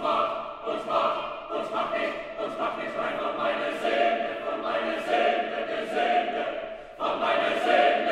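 Mixed chamber choir singing a cappella in German, the voices entering together loudly at the start and holding sustained chords with crisp sibilant consonants. Near the end they drop briefly, then come back in loudly.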